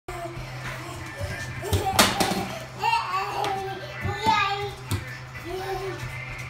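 A high-pitched child's voice talking and exclaiming in bursts, with a sharp knock about two seconds in.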